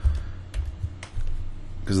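A few light clicks of a computer's controls as moves are stepped through on an on-screen chess board. There is a low thump right at the start, and the clicks come between about half a second and a second and a quarter in.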